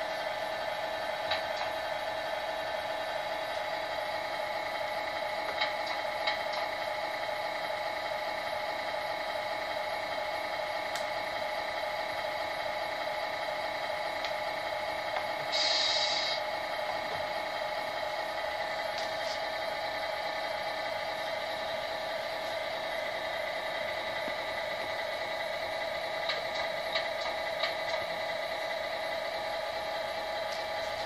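The RC truck's electronic sound unit plays a steady diesel-engine idle through a small speaker. A short hiss like an air-brake release sounds about halfway through, with a few faint ticks.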